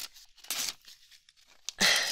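Paper tearing and crinkling as a wrapped gift is opened: a short rip about half a second in, then a longer, louder one near the end.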